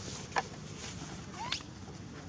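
Young macaque giving two short, high squeaks: a sharp, clipped one about half a second in and a brief rising squeak about a second and a half in.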